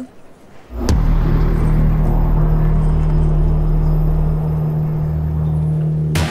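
Background score: a deep, steady bass drone that comes in with a hit about a second in and holds.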